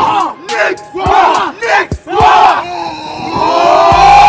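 A group of young men in a tight huddle shouting together, a run of short loud shouts about twice a second, then a longer shout that builds toward the end.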